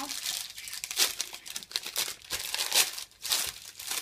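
Wrapper of a puff pastry block being torn open and peeled back by hand: irregular rustling, crackling crinkles, loudest about a second in and again near the three-second mark.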